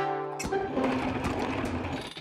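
Background music stops about half a second in. A rapid, rattling mechanical whir follows, a cartoon sound effect of a small machine at work, as the little robot fits the handle to the car jack.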